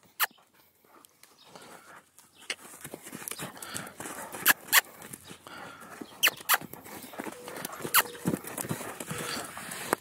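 Hooves of a trotting and cantering horse on arena sand: a soft scuffing with a few scattered sharp knocks.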